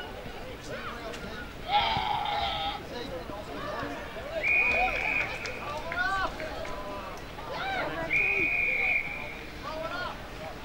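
Spectators and players shouting and calling out across the football ground, with a loud held yell about two seconds in. Two long, steady blasts of the field umpire's whistle come about four and a half and eight seconds in.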